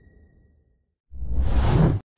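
The fading tail of a logo sting's ringing tone, then near silence, then a whoosh sound effect that swells up over about a second and cuts off suddenly.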